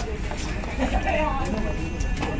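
Indistinct voices over background music.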